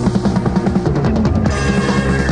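Live rock band playing an instrumental passage: a rapid drum fill on the kit, and about one and a half seconds in the band comes in on a new section with a repeated bass figure.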